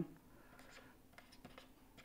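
Faint scratching and tapping of a stylus writing on a tablet screen.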